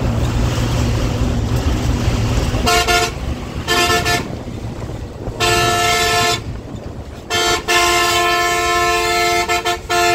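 Bus engine running, heard from inside the cabin, then a bus's multi-tone horn sounding in a series of honks from about three seconds in: two short toots, one of about a second, then a long, broken honk through the last two seconds. The honking warns the vehicles being overtaken.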